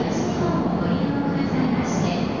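EF64 1000-series electric locomotive hauling a sleeper train as it pulls slowly into the platform: a steady rumble of wheels and running gear.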